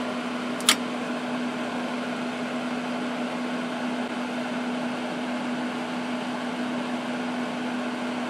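Steady whir of an electric fan with a constant low hum under it. A single sharp click comes less than a second in.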